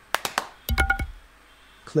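A quick run of four sharp clicks, then a second tight cluster of clicks with a brief ringing tone and a low thud about three-quarters of a second in.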